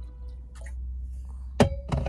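Drinking from an insulated metal bottle, then a single sharp knock about one and a half seconds in, followed by a short ringing tone, as the bottle is put down. A low steady hum runs underneath.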